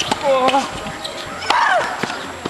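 Tennis rally on a hard court: sharp racket-on-ball strikes, with the woman hitting letting out a loud, pitched shriek on her shots, twice. The rally ends in a winner.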